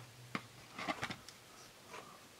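An eraser handled on paper: a few faint light taps, then a soft rub as it starts erasing soft B pencil graphite.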